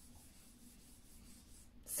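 Faint rubbing and sliding of tarot cards being handled over the tabletop, with the voice coming back in at the very end.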